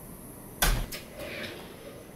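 A wooden interior door shutting with one loud thump about half a second in, followed by a faint scrape.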